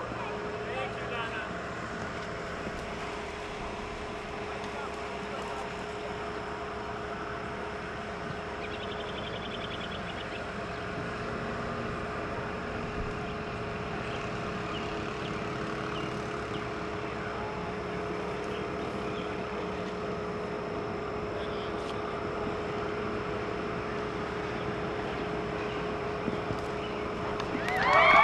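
Crowd at a horse show with a steady background hum and faint scattered voices. Very near the end the crowd erupts in loud cheering and whistling.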